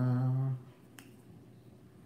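A man's steady closed-mouth hum for about half a second, then a single sharp click about a second in from a spinning reel being handled.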